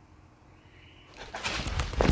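A faint, thin high note about half a second in, which is taken for a possible scream. From just past a second in, rustling and scuffing of clothing and footsteps as the handheld camera is moved.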